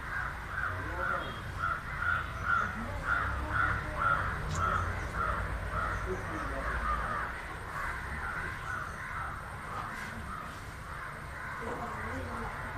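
A crow cawing over and over, about two short caws a second, loudest in the first few seconds and trailing off near the end.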